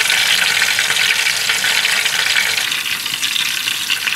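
Battered apple rings deep-frying in hot peanut oil in a steel pot: a steady, dense sizzle and crackle of the oil, easing slightly in the last second or so.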